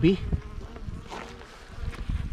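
African honey bees buzzing around the harvested wild honeycomb: a faint, steady hum over low rumbling.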